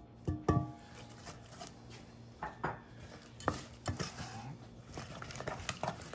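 Spatula stirring and scraping a thick, grainy praline mixture in a stainless steel saucepan. Two knocks against the pan near the start leave it ringing briefly, followed by scattered taps and scrapes.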